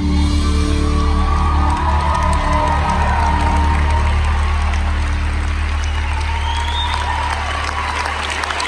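A live band's final chord ringing out over a low held bass note while the audience cheers and whoops, applause building beneath it.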